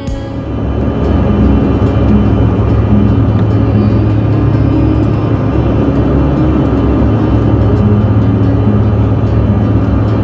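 Airliner in flight heard from inside the cabin at a window seat: a loud, steady roar of engine and airflow, with music playing faintly under it.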